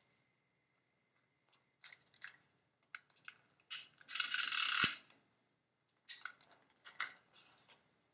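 Handheld adhesive tape runner drawn along a strip of paper: one rasping zip of about a second, ending in a light tap. Small clicks and taps of paper being handled come before and after it.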